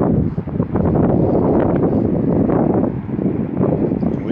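Wind buffeting a phone's microphone: a loud, uneven low rumble that swells and dips.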